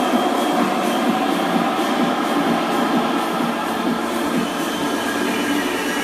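Techno track in a breakdown: the kick drum and bass have dropped out, leaving a loud, dense rushing noise texture with faint regular ticks up high, played over a PA.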